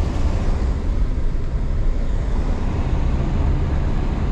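Car cabin noise while driving on a wet road: a steady low rumble of engine and tyres on wet pavement, with a faint steady hum joining about three seconds in.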